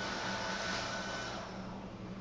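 Ball python's long hissing breath while it coils around a mouse, fading out about one and a half seconds in, over a steady low hum.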